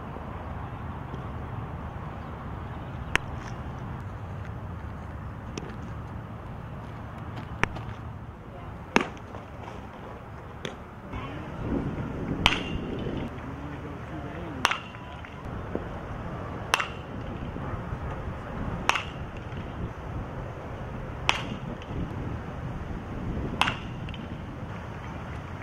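Baseball bat striking pitched balls in batting practice: a sharp crack about every two seconds through the second half, some with a short ring. Two lone cracks come earlier, over a steady outdoor background.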